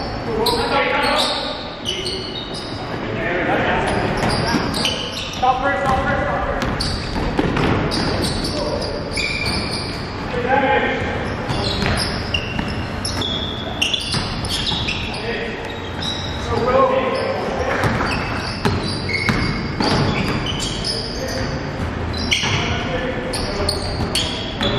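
Basketball game sounds in a gymnasium: a basketball bouncing on the hardwood floor amid players' shouts and calls, echoing in the large hall.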